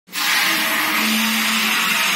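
Car washing lift raising its platform: a steady, whirring hiss from its drive unit that starts abruptly right at the beginning, with a low hum underneath.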